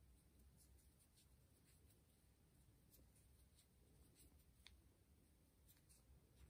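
Near silence: faint, scattered ticks and rustles of a metal crochet hook working cotton yarn in single crochet stitches.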